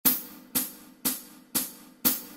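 Percussion click track counting in at 120 beats per minute: four sharp, hi-hat-like ticks, evenly spaced two a second, each dying away quickly.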